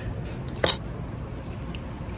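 A single sharp clink of tableware, dishes or utensils knocking together, about two-thirds of a second in, over a low steady background rumble.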